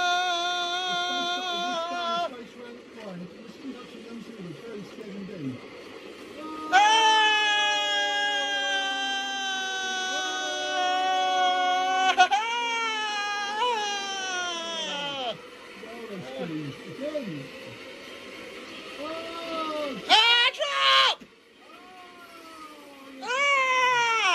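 A child's voice holding long, high wailing notes, one of them about five seconds long, then shorter notes that slide down in pitch, with a few brief sharp cries near the end.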